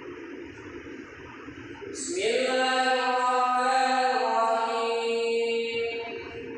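An imam chanting Quran recitation aloud in prayer. After a short lull, a new melodic phrase begins about two seconds in, rising into long drawn-out held notes.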